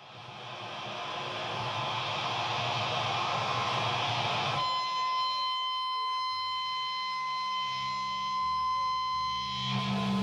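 Electric guitar noise and feedback through effects pedals before the song: a distorted, noisy wash fades in, then about halfway through it changes abruptly to a steady drone of held high tones over a low hum.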